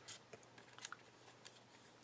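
Near silence with a few faint rustles and ticks of a paper cutout being handled.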